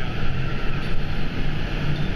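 Steady rushing background noise of an indoor water park, heaviest in the low end, with no distinct events.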